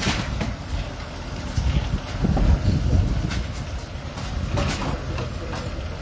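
A farm tractor's diesel engine runs under load as its rear forestry winch drags an old van through the brush, with a deep, uneven rumble. There is a sharp knock at the start and another near the end.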